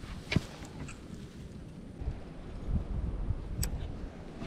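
Wind and clothing rumbling against a body-worn action camera's microphone, stronger in the second half. Two sharp clicks come through, about a third of a second in and just before the end.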